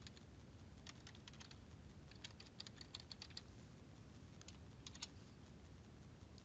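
Faint computer keyboard typing: quick keystrokes in three short runs, around one second in, from about two to three and a half seconds, and again around four and a half to five seconds.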